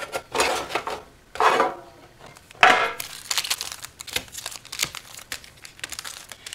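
Foil Yu-Gi-Oh booster packs and the tin's plastic insert crinkling as they are handled, in several separate rustles, the loudest about two and a half seconds in, with small clicks between.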